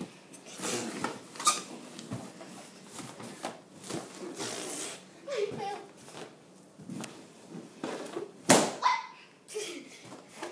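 Latex balloons being bumped and squashed on a carpeted floor as a child sits on them to burst them, a run of short knocks and rustles, with one loud sharp balloon pop about eight and a half seconds in. Brief vocal sounds come in between.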